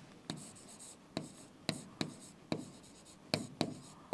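Chalk writing on a blackboard: a string of short, sharp chalk strokes and taps, about seven in four seconds.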